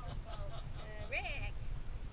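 Faint human voices with indistinct talk. A little past a second in comes one drawn-out vocal sound that rises and falls in pitch.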